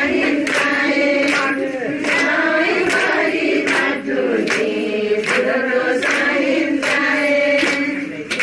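A group of women singing a traditional Darai Sohorai dance song together, with a sharp beat keeping time about every three-quarters of a second.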